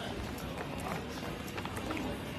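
Street ambience picked up by a handheld phone's microphone while walking: a steady noisy hiss with low rumble, light irregular knocks of footsteps and phone handling, and faint voices in the background.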